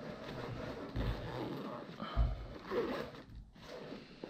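A Local Lion mountain-bike backpack of nylon and mesh being handled: fabric and straps rustling, with two soft bumps about one and two seconds in.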